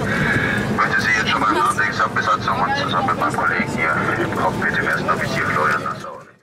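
Voices talking over one another with no clear words, over the steady drone of a jet airliner's cabin.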